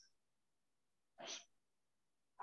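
Near silence on a video-call line, broken by one brief faint sound a little over a second in.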